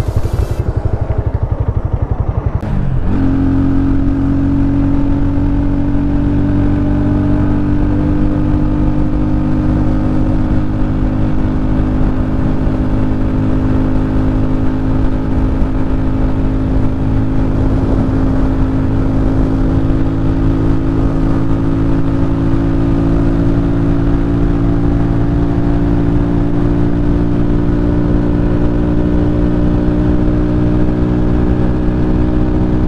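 RT250 motorcycle engine running hard at high revs under steady throttle at road speed, its pitch creeping slowly upward after a change about three seconds in. This is a test run with the carburettor's air jet just opened to two turns, to cure the engine's bucking at full throttle.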